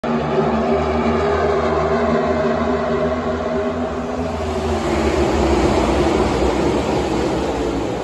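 A pack of NASCAR Cup Series stock cars running at full speed, the V8 engines blending into one loud drone. The sound swells to its peak about five to six seconds in as the field passes, then eases slightly.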